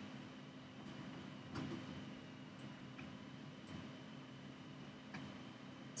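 Quiet room tone with a steady low hum, broken by a few faint, irregular clicks.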